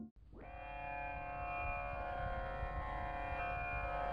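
Right at the start, the tail of an intro tune fades out. About a third of a second later a steady drone fades in and holds: a rich stack of tones on one pitch. This is the sruti drone that opens a Carnatic vocal recording.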